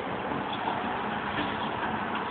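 Steady background noise of street traffic, an even wash of sound with no distinct events.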